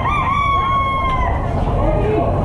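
A rooster crowing once: a single call that rises at the start, holds level and drops off after about a second and a quarter, over steady low background rumble.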